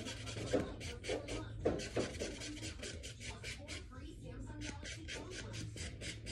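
Fast, even rubbing or scratching, about five strokes a second, over a low steady hum.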